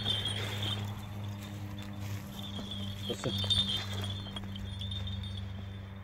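Metal tether chain jingling and clinking as a large shepherd dog moves on it, in spells, with a steady low hum underneath.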